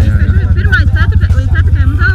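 Quad bike (ATV) engine idling close by, a steady, fast, even pulse, with voices over it.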